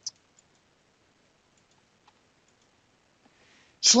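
One sharp computer mouse click just after the start, followed by a few much fainter clicks with near quiet between.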